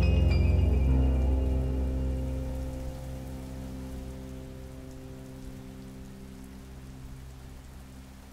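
Background music, a held chord, fading away over the first few seconds, leaving steady rain with a few faint sustained tones lingering underneath.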